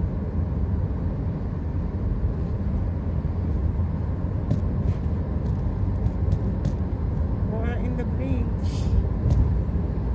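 Steady road and engine rumble inside the cabin of a moving car, with a few light clicks midway through. A brief voice and a short hiss come near the end.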